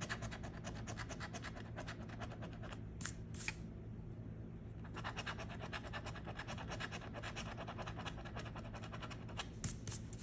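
A coin scratching the coating off a paper scratch-off lottery ticket in quick back-and-forth strokes, several a second. The strokes come in two runs with a lull of about two seconds in the middle, and there are a few sharper scrapes about three seconds in and again near the end.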